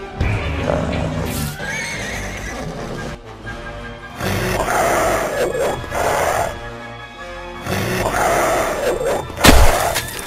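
Cartoon horse whinnying in panic several times over dramatic film music, with one loud sudden crash near the end.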